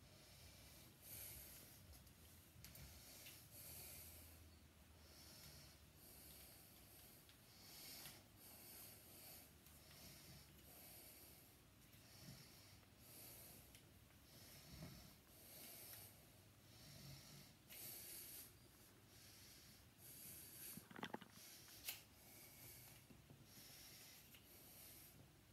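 Near silence: a person's faint, steady breathing close to the microphone, with a couple of small sharp clicks near the end.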